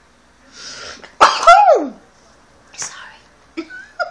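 A woman sneezes once into her hand: a breathy intake about half a second in, then the loud sneeze with a voiced cry falling in pitch, and a short breath out near the end.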